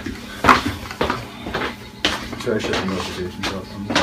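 Background talk in a room, with a few light clinks and knocks, the first about half a second in and another two seconds in.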